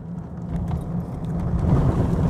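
Truck heard from inside the cab while driving: a steady low engine drone with road and tyre noise, growing louder through the second half.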